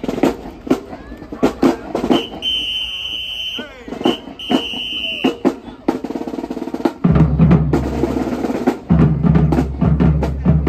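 Marching band drumline playing sharp snare hits and rolls, with a high whistle blown long, short, long in the middle. About seven seconds in, a heavy low part of bass drums and band joins in.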